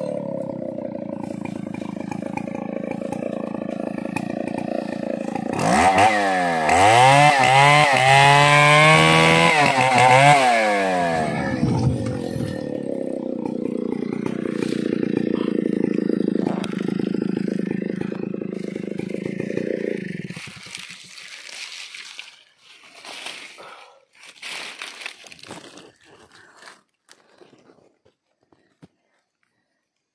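Stihl chainsaw running as it cuts a merbau log, its pitch rising and falling repeatedly several seconds in, then running steadily until it stops about twenty seconds in. After that, faint scattered snaps and rustles.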